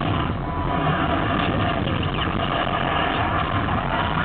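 Loud, rumbling soundtrack of a concert intro film playing through the arena's speakers, with fans screaming over it in rising and falling voices.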